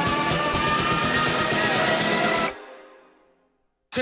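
Electronic dance music from a DJ mix with a steady beat and sustained synth chords. About two and a half seconds in it cuts off, a short echo fades into a moment of silence, and the next track starts just at the end.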